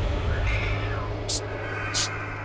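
A cat meows once about half a second in, the call falling in pitch, over a low steady drone. Two short, sharp hissing bursts follow near the end.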